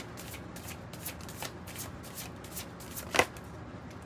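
A deck of tarot cards being shuffled by hand, a steady run of soft card-on-card strokes about three a second. There is one sharper, louder snap about three seconds in.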